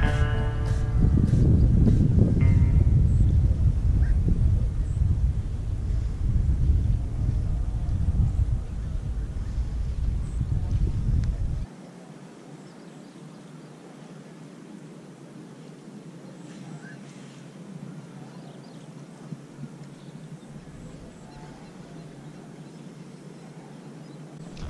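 Low rumbling wind buffeting the microphone for about the first half, cutting off suddenly to leave faint, steady outdoor ambience.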